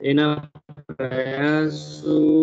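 Speech only: a man lecturing in Gujarati, with one long drawn-out stretch in the second half.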